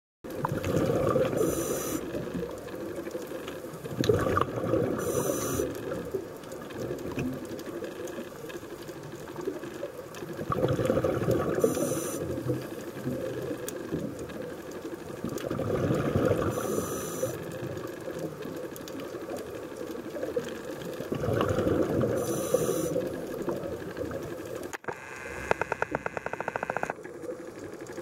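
A scuba diver's regulator breathing underwater: about five slow breath cycles, each a swelling rush of exhaled bubbles with a short high hiss from the regulator. Near the end there is a rapid clicking rattle for about two seconds.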